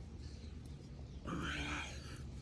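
A man's short, strained grunt as he pushes up from the bottom of a push-up, about halfway through, over a steady low rumble.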